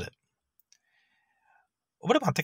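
A single faint mouse-click sound effect about a third of the way in, with a faint short ringing after it, in near silence.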